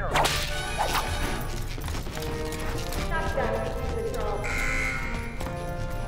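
Cartoon sound effects: a sharp hit with a swish right at the start, followed by soundtrack music with sustained tones that carries on to the end.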